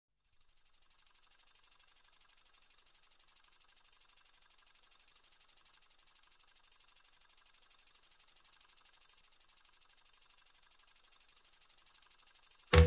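Near silence with a faint, fast ticking hiss, about ten ticks a second.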